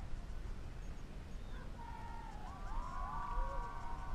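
Wind rumbling on the microphone, with several overlapping drawn-out tones that rise, hold and fall away from about halfway through.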